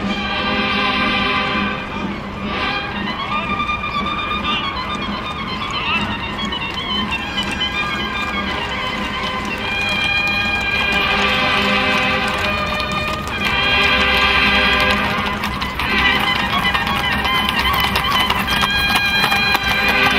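Mounted band of trumpets playing a march, with sustained brass notes that swell in loudness partway through.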